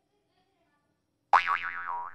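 A cartoon-style "boing" sound effect: a sudden springy twang a little over a second in, its pitch wobbling up and down several times as it fades over about a second.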